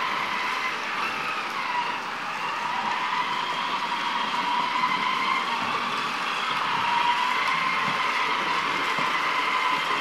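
Proscenic M7 Pro robot vacuum running as it drives back to its charging base: a steady motor whine with a higher overtone, wavering slightly in pitch, over a hiss.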